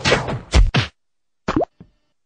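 Cartoon fight sound effects: a noisy rushing burst with a sharp hit about half a second in, cut off just before a second, then a short rising zip about a second and a half in.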